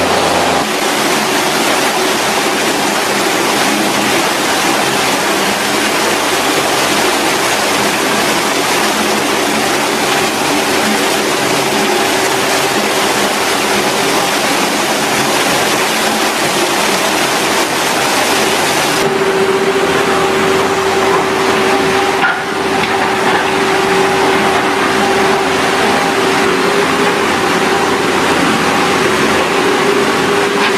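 Heavy dump truck engines running under load, a steady, loud, noisy drone with a constant hum, its character changing about two-thirds of the way through and dipping briefly soon after.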